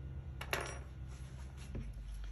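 Small brass carburetor heater sensors being handled, with one sharp metallic clink about half a second in, then faint handling noise.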